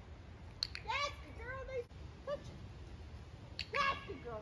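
A woman's high-pitched, wordless calls to a dog: short syllables that rise and fall in pitch, in a quick run about a second in, once more a moment later and again near the end. A sharp click comes just before the first run.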